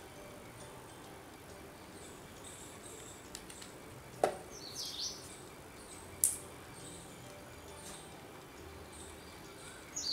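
Faint steady background hiss with a bird chirping briefly about five seconds in, and two sharp clicks, one just before the chirp and one about two seconds later.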